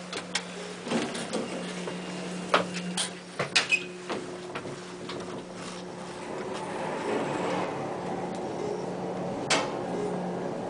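Otis traction elevator car from inside: a steady hum with a run of clicks and knocks in the first few seconds. Then, from about seven seconds, a louder even rushing rumble as the car travels in the shaft, with one more click near the end.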